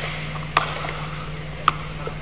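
Two sharp basketball bounces on an indoor court floor, about a second apart, over a steady low hum.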